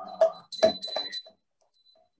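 A man's voice chanting a Sanskrit prayer in short syllables, stopping about a second and a half in.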